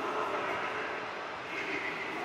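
Steady station noise of a passenger train at a platform in a large railway station hall.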